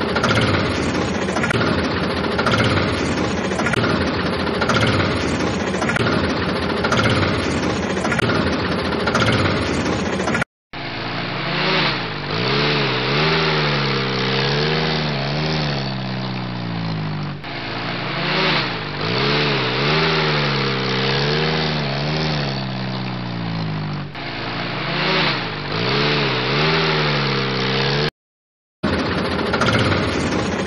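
Tractor engine sound: a rough, rhythmic running engine for about ten seconds. After a sudden short cut, an engine revs up and down again and again. Near the end another brief cut brings back the rough running sound.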